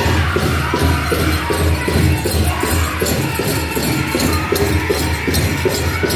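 Powwow drum group performing a grass dance song: a large hand drum struck in unison in a fast, steady beat under high-pitched group singing.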